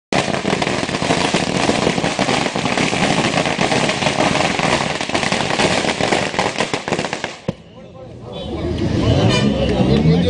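A string of firecrackers going off in a rapid, dense crackle of pops, stopping abruptly about seven and a half seconds in. After a brief lull, men's voices rise in shouts near the end.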